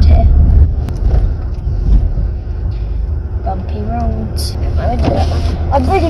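Low, steady road and engine rumble of a car heard from inside the cabin while driving, loudest for about the first half-second and then easing a little. Faint voices come in around the middle and near the end.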